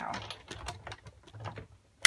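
Sizzix Big Shot die-cutting machine being hand-cranked, the cutting plates rolling through the rollers with a run of faint, irregular clicks and a low rumble that stop just before the end.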